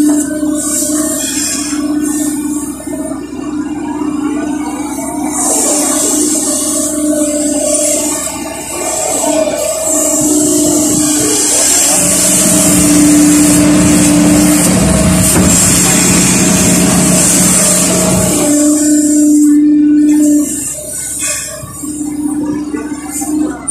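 Kobelco SK140 excavator's Mitsubishi D04FR diesel engine and hydraulic pumps working under load as the bucket digs and lifts soil, heard from beside the operator's seat. A steady whine comes and goes as the controls are worked, and a deeper, louder load sound takes over from about the middle until near the end.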